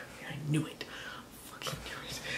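A man whispering faintly under his breath, with a small louder bit about half a second in.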